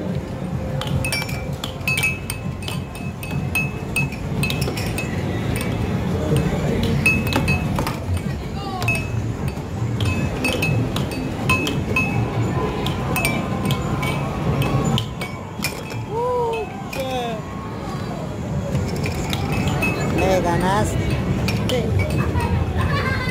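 Air hockey puck and mallets on an Air FX table, clacking in quick, irregular sharp clicks as the puck is struck and bounces off the rails. Underneath is a steady arcade din with short chirping electronic game sounds and crowd chatter.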